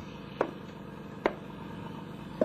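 Two short knocks less than a second apart, over the steady hiss of an old radio recording.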